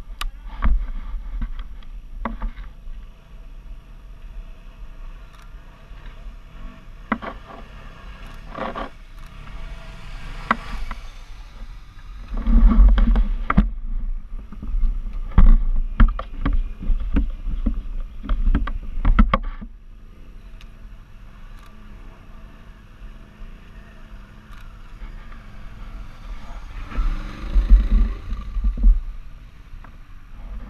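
Off-road motorbike engines revving in repeated bursts as the bikes ride through mud at a distance. The engines are loudest through the middle stretch and again shortly before the end, over a steady low rumble.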